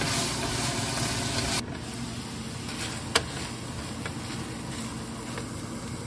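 Ground beef and vegetables sizzling in a nonstick frying pan as they are stirred, louder for the first second and a half, with a single sharp click about three seconds in.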